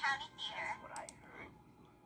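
A hushed, whispery voice speaking for about the first second, fading out, with two faint clicks about a second in.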